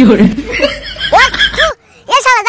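Chuckling laughter, a few short rising-and-falling whoops that stop just before the end.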